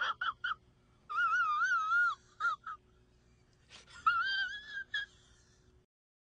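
A man's high-pitched, wheezy giggling in bursts: two quick squeaks, a long warbling whine about a second in, two more short squeaks, then another long wavering one about four seconds in.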